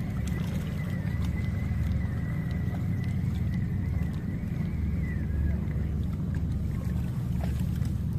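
Steady low rumble of wind buffeting the microphone on the seashore at night. A faint, thin, steady high tone runs through it for about the first five seconds.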